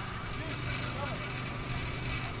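Steady low outdoor background rumble with faint, distant voices calling from the pitch.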